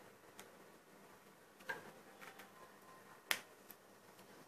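A few faint clicks as a micro USB cable plug is pushed into a smartphone's port and the phone is handled, the sharpest click a little over three seconds in.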